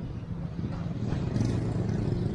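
Road traffic: vehicles passing on a wide street, their engines a steady low hum that swells a little past the middle.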